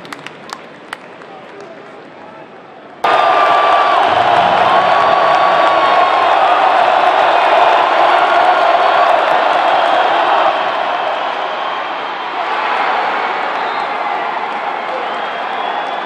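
Football stadium crowd roaring, cutting in suddenly about three seconds in after a few seconds of quieter crowd murmur with a few sharp clicks; the roar eases a little past the middle.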